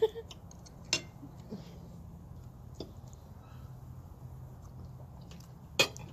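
Cutlery on dinner plates: forks and knives clicking and scraping as food is cut and picked up, a few scattered sharp clinks with the loudest pair near the end, over a faint steady low hum.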